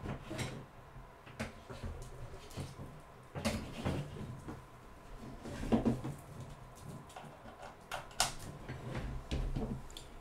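Scattered light clicks and knocks of hands handling a Mac Mini sitting on a metal mini-PC dock and the small USB dongle beside it, a few separate taps spread over several seconds.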